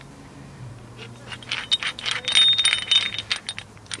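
Steel brake caliper wind-back tool being handled and wound. There is a quick run of small metallic clicks and clinks, loudest past the middle, some with a brief ring.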